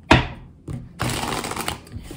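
Tarot deck being split and riffle-shuffled: a sharp tap just after the start, then from about a second in a rapid flutter of cards lasting under a second.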